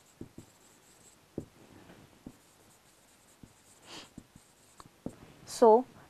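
Whiteboard marker writing on a whiteboard: faint strokes and a scatter of light ticks from the tip.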